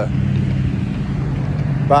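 Steady low engine rumble of road traffic, a motor vehicle running without any rise or fall in pitch.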